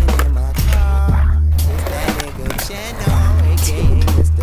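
Skateboard wheels rolling on concrete, with a few sharp board clacks and impacts, under a hip-hop music track with a heavy bass line.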